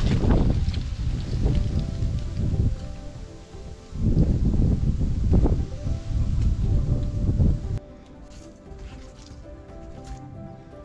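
Wind buffeting the microphone in two long gusts over quiet background music; the wind noise cuts off suddenly about eight seconds in, leaving just the music.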